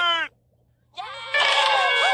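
A voice ends with a falling pitch just after the start. After half a second of silence, a high, noisy, held cry with several pitches at once comes in about a second and a half in.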